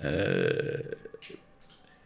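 A man's drawn-out "uhh" hesitation sound, held on one pitch for about half a second and trailing off, then a short breath and the quiet of a small studio room.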